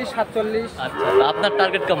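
A cow mooing: one long call of about a second that rises and falls gently, starting about a second in.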